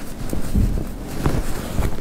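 Cotton fabric being handled and rustled close by, with a few soft low bumps as the hands work it on the table.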